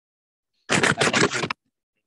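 A loud scratchy rustle, about a second in, made of several quick strokes and lasting under a second, with dead silence before it.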